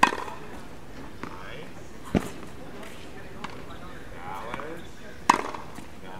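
Tennis racket striking a ball on a backhand: a sharp crack at the start, and another about five seconds in, with a duller thud about two seconds in.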